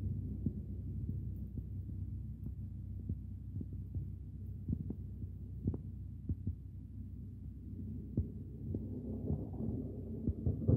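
Steady low outdoor rumble with faint, irregular ticks scattered through it.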